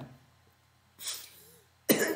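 A man's single short cough about a second in, between pauses in his speech.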